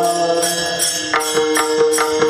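Devotional group chanting with brass hand cymbals (taal) struck in a steady beat, about three strikes a second, over sustained held notes.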